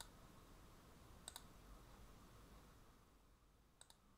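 Faint computer mouse clicks over near silence: one at the start, one just over a second in, and two close together near the end.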